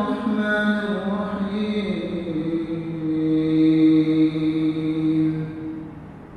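A man's voice reciting the Quran in the melodic tilawat style, drawing out long held notes. The pitch steps down about two seconds in to a long, lower sustained note that fades out near the end.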